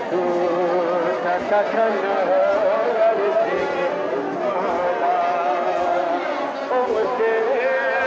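A Balti noha, a Shia mourning lament, sung or chanted by many voices together in long, wavering notes that continue without a break.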